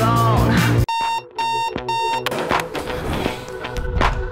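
Rock music cuts off about a second in and three short, evenly spaced electronic alarm beeps sound. A quieter music track with a beat then starts.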